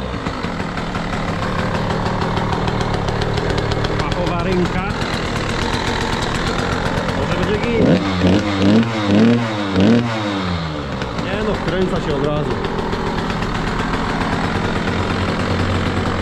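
KTM SX 85's small single-cylinder two-stroke engine running, with a run of quick throttle blips about halfway through. It now picks up on the throttle after a carburettor clean, new spark plug and fresh fuel, and no longer hesitates and stalls as it did after standing a long time.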